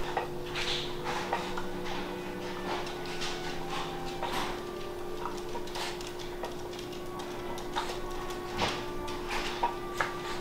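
A pet food bag being cut open and handled: scattered short rustles and clicks, with a dog whimpering for food. A steady low hum runs underneath.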